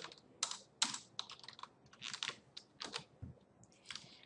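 Computer keyboard keys being pressed: an irregular run of light key clicks, a few per second.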